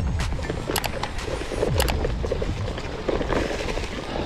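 Gravel bike rolling fast over a bumpy, leaf-covered forest trail: a steady rumble of tyres and wind, with a few sharp rattles and clicks from the bike over bumps, about a second in and again near two seconds.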